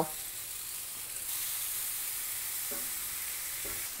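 Yellow summer squash sizzling on a hot ridged grill pan: a steady frying hiss that gets louder about a second in.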